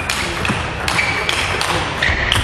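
Table tennis rally: the celluloid ball clicks sharply off the rackets and the table, about five hits in quick succession.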